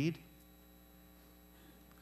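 A man's spoken word trails off, then a faint, steady electrical mains hum from the sound system fills the pause.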